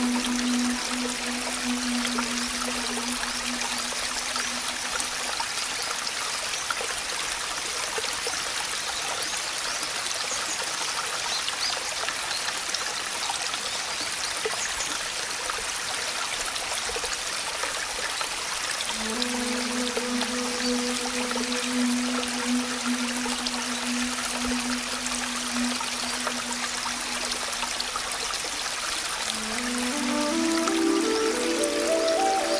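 Steady rain hiss, with soft background music: a low held note through the first few seconds and again for several seconds in the second half, and a rising run of notes at the very end.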